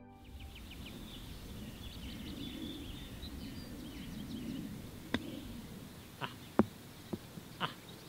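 Quiet outdoor ambience with small birds chirping faintly. In the second half come a few short, sharp ticks: a wedge chip shot struck from the rough and the golf ball landing and bouncing on the green.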